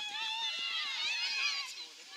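Several high voices shouting and calling over one another, with no clear words.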